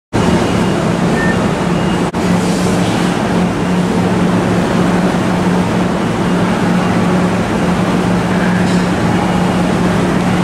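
Steady rumble with a constant low hum on a station platform as a Kintetsu 23000-series Ise-Shima Liner express train pulls slowly in. The sound drops out for an instant about two seconds in.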